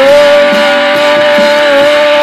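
Guitar-rock song with electric guitar, carrying one long note held steady throughout.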